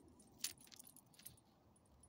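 Metal ID tags on a small dog's collar jingling faintly as it noses the ground: one sharp clink about half a second in, then a few lighter ticks.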